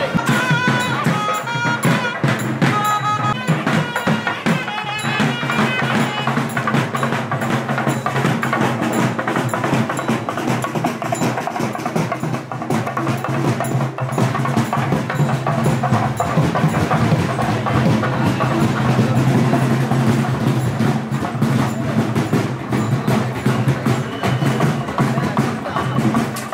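Music led by fast, steady drumming and percussion, with a short melody of clear high notes in the first few seconds.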